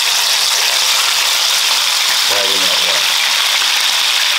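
Whole black sea bass pan-searing in hot oil in a skillet: a loud, steady sizzle.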